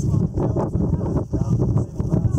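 Wind buffeting the microphone in a dense, irregular flutter, strongest in the low range.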